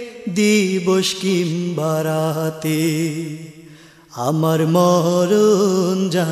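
A male voice chanting a slow, wordless melody with wavering, gliding notes, as the intro to a Bangla Islamic song (gojol). It comes in two long phrases with a short break about four seconds in.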